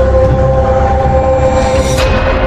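Eerie background music: a held droning chord over a deep low rumble, steady and unbroken.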